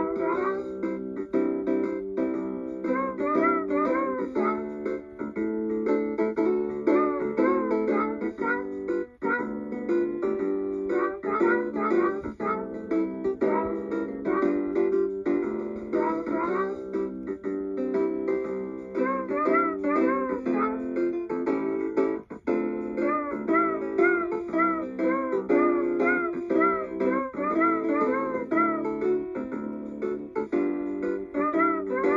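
B. Toys Woofer dog toy guitar playing one of its built-in pre-recorded songs, a plucked-guitar-style tune. It runs continuously, dropping out briefly about 9 and 22 seconds in.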